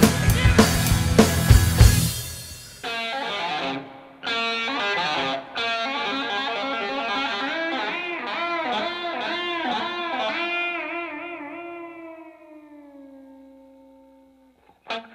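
A full rock band with drums stops abruptly about three seconds in. A distorted electric guitar is left playing an unaccompanied solo of quick runs and bent notes with wide vibrato. It ends on one long held note that fades out near the end.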